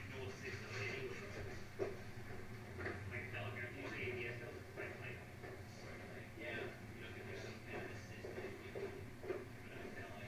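Faint, indistinct voices in the background over a low steady hum.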